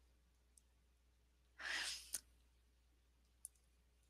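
A single audible breath from a woman, picked up close by her headset microphone about halfway through, followed by a small mouth click; otherwise near silence.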